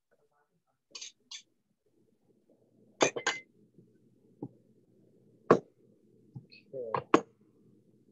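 A handful of sharp clinks and knocks as glass bottles, jars and a cooking pot are handled on a kitchen counter and stovetop while vegetable oil goes into the pot. They sound over a faint steady low hum, heard through video-call audio.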